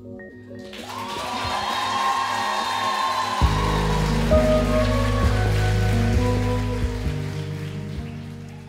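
Audience applause swells about a second in over the band's closing notes. A deep, sustained bass chord comes in about halfway, and the applause fades toward the end.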